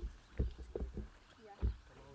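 Rhinos feeding in a pile of hay: a few short, irregular low thuds and rustles as they pull at and chew the dry grass.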